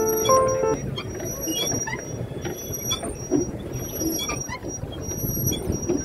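Background music cuts off under a second in. The outdoor sound of a boat ride on a lake follows: a steady rough rushing of water and wind, with scattered short high squeaks.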